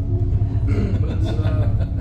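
A steady low rumble with a constant hum, and indistinct voices faintly in the background about a second in.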